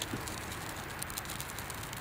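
Shredded birch bark burning, giving faint, irregular crackles and ticks over a low steady hiss.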